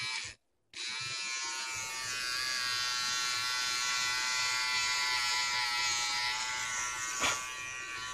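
Electric face trimmer, its blades freshly sharpened and reassembled, buzzing steadily as it is run along forearm hair to test that it cuts properly. The buzz breaks off for a moment near the start. A sharp click comes about seven seconds in.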